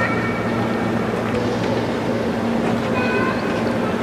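Steady stadium background noise with a constant low hum, and faint snatches of distant voices near the start and about three seconds in.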